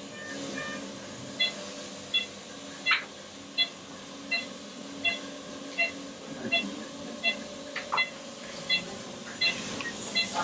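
An operating-room patient monitor beeping once with each heartbeat, short even beeps about 1.4 a second, a heart rate of roughly 80 a minute, over a steady equipment hum.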